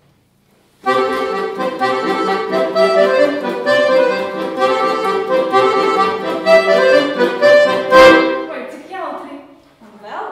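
A piano accordion playing a short melody with chords: it starts about a second in and ends on a sharp accented chord about eight seconds in that dies away.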